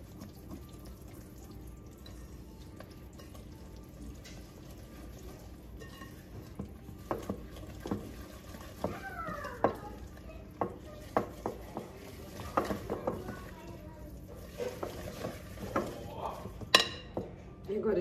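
Metal wire whisk stirring thick cornmeal cake batter in a glass bowl. It is soft at first, then from about six seconds in there are frequent irregular clinks and scrapes of the whisk against the glass.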